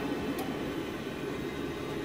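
Baxi gas boiler running and firing on central heating: a steady hum of its fan and burner, with a faint click about half a second in.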